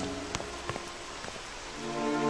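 A steady hiss like falling rain, with a few sharp clicks. Soft background music fades out at the start and comes back near the end.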